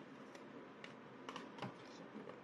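A few light clicks and taps of fingers handling the pages of a photobook, about five in all, the loudest near the end, over low room noise.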